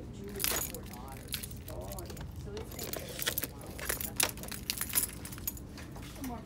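Small metal objects jingling and clinking in irregular bursts, loudest about half a second in and again around four and five seconds, with faint voices underneath.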